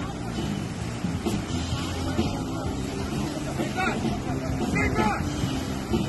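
Surf washing in over a steady low rumble, with short indistinct shouts now and then, mostly about 4 and 5 seconds in.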